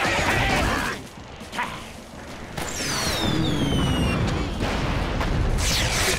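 Cartoon battle sound effects: a noisy crash and scuffle in the first second, then falling whistles over a long low rumble of explosions.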